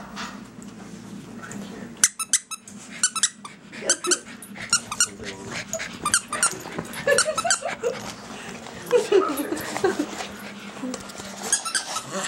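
A dog biting and squeezing a loose toy squeaker, making many short, sharp squeaks in irregular bursts from about two seconds in.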